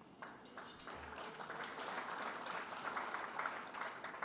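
Faint audience applause, a patter of many hands clapping that builds up over the first couple of seconds and carries on until the speech resumes.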